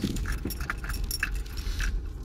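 Keys jangling in irregular light clinks, shaken as the car rolls slowly over a rough, cracked alley surface, over the low rumble of the car.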